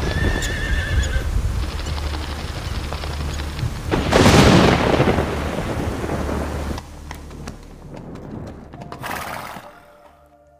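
A horse whinnies about a second in, over a low steady drone. About four seconds in a loud rushing swell of noise rises and fades, and a shorter rush comes near the end.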